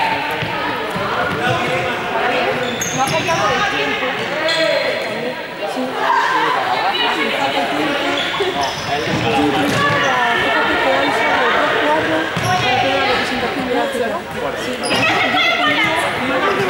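Many young people's voices talking and calling out over one another, echoing in a large sports hall, with scattered thuds of feet running on the court floor.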